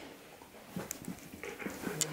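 Husky making short, soft, low vocal grumbles, starting about a second in and coming more often toward the end.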